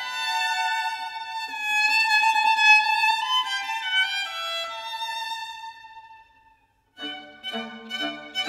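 A violin plays a high, lyrical melodic line over little or no low accompaniment, then dies away to silence about six and a half seconds in. After a brief pause the full string texture comes back in, with lower notes under the violin, near the end.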